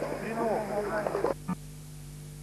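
Several people's voices talking over one another. The voices cut off abruptly about two-thirds of the way through, leaving a steady electrical hum with one short click.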